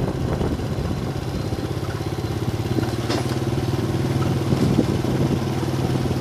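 A small motorbike engine running steadily at low, even revs as it rides along a street.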